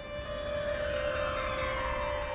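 Background music for the documentary: a steady held drone note under a slow downward sweep that falls in pitch over about two seconds.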